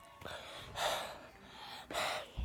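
A boy breathing hard through his mouth, about four short noisy gasping breaths in and out, from the burn of a very spicy pizza.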